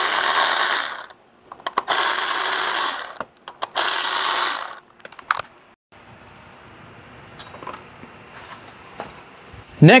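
Cordless electric ratchet run in three bursts of about a second each, backing out the triple-square bolts of an Audi 3.0T V6's water pump pulley. A few sharp clicks follow, then only a faint steady background.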